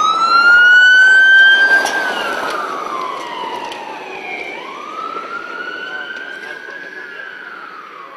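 Siren on a blue-lit 4x4 emergency vehicle passing along a gravel forest track, with a slow wail that rises and falls twice. It is loudest in the first two seconds as the vehicle passes, then fades as it drives away.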